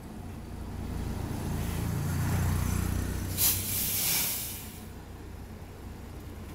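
A city bus's engine rumbles past, swelling and then easing, with a loud hiss of air from its air brakes about three and a half seconds in as it slows.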